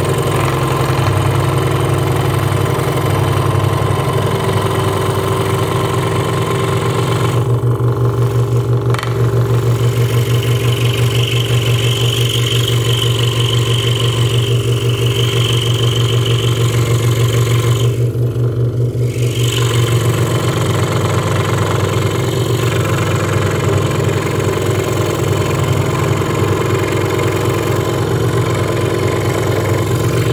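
Hegner Multicut 2S scroll saw running with a number 12 blade, cutting through a thick block of wood: a steady low motor hum with the fast chatter of the up-and-down blade. A higher whine from the cut rises over it for several seconds in the middle.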